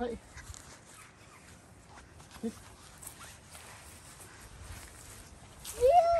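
Mostly quiet outdoor background, broken by one short spoken word about two and a half seconds in, with a child's high-pitched excited exclamation starting right at the end.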